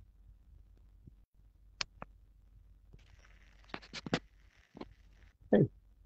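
Clicks and bumps of a headset microphone being handled, over a low electrical hum. A brief louder sound slides down in pitch near the end.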